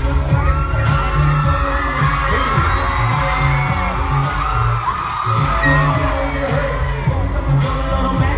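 Live hip-hop performed in a large hall: a loud beat with a heavy bass line and sharp hits about once a second, a rapper's voice on the microphone, and the crowd screaming and cheering along.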